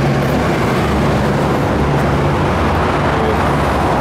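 Steady rumble of road traffic passing close by, a constant wash of engine and tyre noise with no distinct single event.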